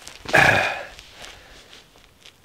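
A man's short, rasping vocal sound, about half a second long and a little after the start.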